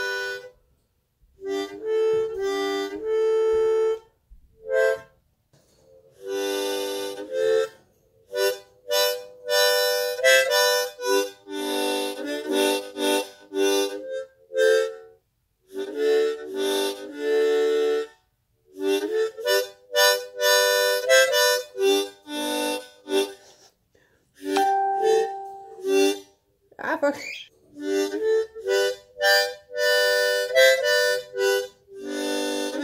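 Seydel blues harmonica in the key of G, played by a beginner: short notes and chords in halting, stop-start phrases with brief pauses between them.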